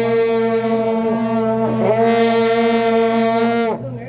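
A loud wind instrument holding long, steady notes, the pitch sagging briefly about two seconds in and falling away as the note ends near the end.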